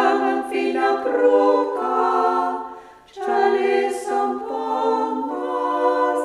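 A group of women's voices singing a traditional Ladin folk song unaccompanied, in close harmony. They hold long chords, break off for a breath about three seconds in, then come back in together.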